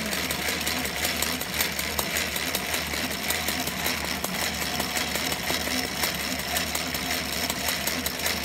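Old Singer treadle sewing machine, converted for Al Aire free-motion embroidery, stitching steadily with a rapid, even needle chatter as the hooped fabric is moved under the needle.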